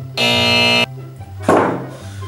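A harsh game-show buzzer, the wrong-answer signal, sounds once for under a second, over quiet background music. A short, sudden noisy burst follows about a second and a half in.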